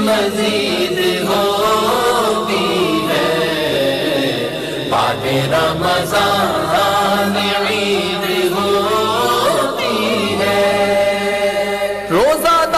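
Devotional chanting: a voice sings long melodic lines that bend up and down, held without a break.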